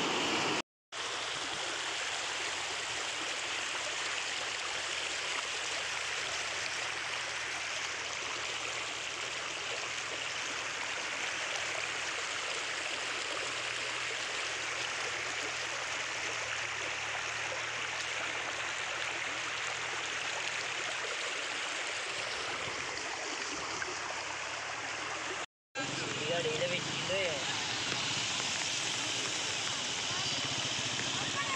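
Fast-flowing floodwater rushing in a steady, even wash. The sound drops out for a split second just under a second in and again near the end.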